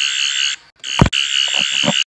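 Toy sonic screwdriver buzzing with a steady high electronic buzz. It cuts out about half a second in and starts again just after a click about a second in.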